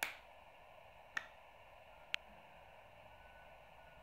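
Three faint, sharp clicks over a steady low hiss: one right at the start, one about a second in and one about two seconds in.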